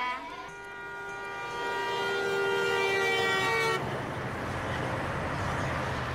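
A vehicle horn sounds a long, steady chord of several notes for about three and a half seconds, then stops abruptly. The rushing noise and rumble of a heavy semi truck driving close past takes over.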